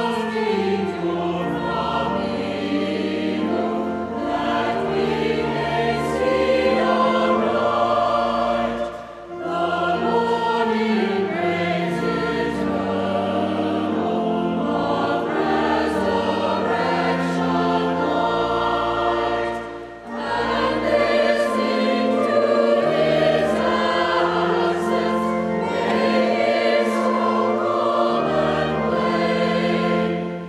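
A choir singing sacred music with pipe organ accompaniment, long low notes held under the voices. The music goes in phrases, with brief breaths about nine and twenty seconds in.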